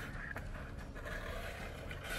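Cardboard inner box sliding out of a printed cardboard figure box: a faint, steady scraping of card against card, with a light click about a third of a second in, over a low hum.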